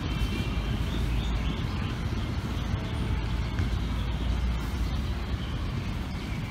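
Steady low rumble of outdoor background noise, with a few faint, short high chirps over it.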